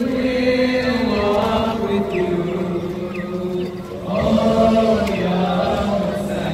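Slow, chant-like sung vocal music of long held notes that step gently up and down in pitch, with a brief dip in loudness about four seconds in.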